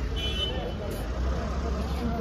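Busy pedestrian street ambience: indistinct chatter of passers-by over a steady low rumble, with a brief high-pitched tone near the start.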